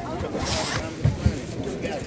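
Handling noise as a phone is moved and covered: a brief fabric-like swish, then two dull thumps, over background chatter.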